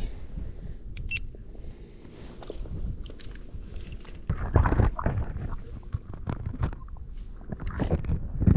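Irregular knocks, rustles and low rumbles from an action camera being handled, with water sloshing as hands reach in among seaweed-covered rocks in a shallow rock pool. There are louder clusters of knocks about halfway through and near the end.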